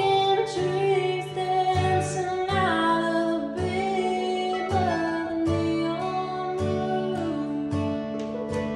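A woman singing drawn-out, sustained notes of a country ballad over a strummed acoustic guitar, with a mandolin playing along.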